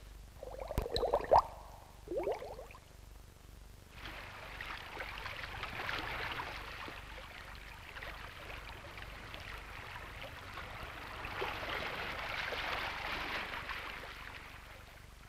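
Animated-film sound effect of the open sea: a steady rushing of water from about four seconds in, swelling a little near the end. Before it, a few short rising tones in the first two or three seconds.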